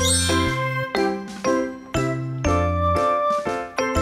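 Background music: a light, bouncy tune of chiming bell-like notes over a deep bass, changing notes about every half second, opening with a glittering chime flourish.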